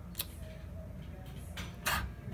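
A pause in a boy's talk: a steady low rumble, a small click shortly after the start, and a short breathy hiss near the end as he draws breath to go on speaking.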